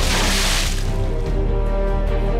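Water thrown from a glass splashes into a person's face, a brief hissing splash in the first second, over background music with held tones.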